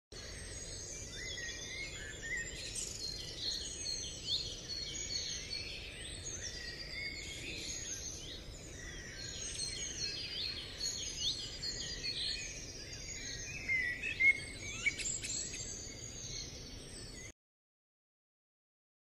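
A chorus of songbirds chirping and trilling over a faint steady background noise, with many short overlapping calls; it cuts off suddenly near the end.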